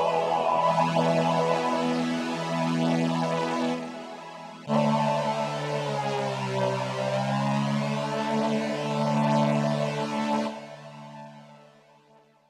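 Behringer VC340 analog synthesizer playing sustained chords. One chord fades, a new chord comes in about five seconds in and sags slightly in pitch partway through, then the sound dies away over the last second or so as the keys are let go.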